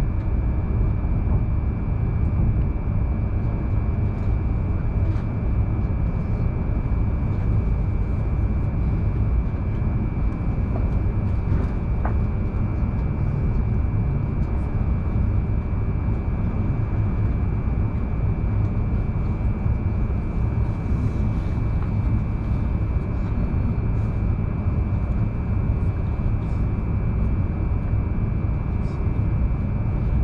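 Running noise inside a Hokuriku Shinkansen car as it rolls into a station: a steady low rumble with a thin, steady high whine over it.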